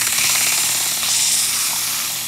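Sandpaper held against the spinning steel shaft of a running General Electric fan motor from a 1955-56 Fedders air conditioner makes a loud, steady rasping hiss as it cleans surface rust off the shaft. A faint low motor hum runs underneath.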